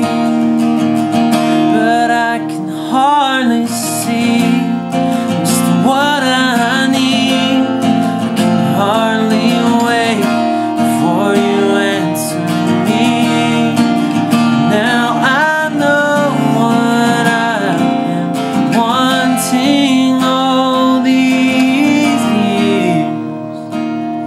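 Acoustic guitar strummed steadily under a man singing in phrases of a few seconds, his voice wavering in pitch.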